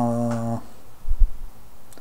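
A man's short, steady "hmm" hum at one pitch, followed about a second in by a brief low thump, which is the loudest sound.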